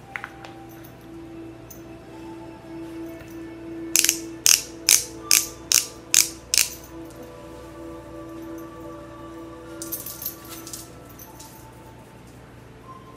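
Twist dial of a Maybelline Instant Age Rewind foundation being turned to push foundation up into its built-in sponge applicator. It gives a quick run of about seven sharp ratcheting clicks a little after the start, then a few fainter clicks near the end.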